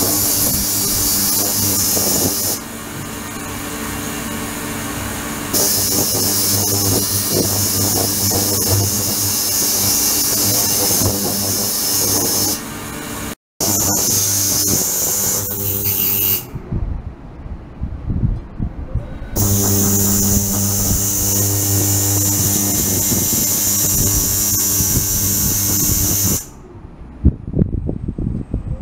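Ultrasonic cleaning tank running, a steady hum with a high hiss above it. The hiss cuts out and comes back several times as the controller switches the oscillation off and on; in the quieter gaps, lower irregular water sounds remain.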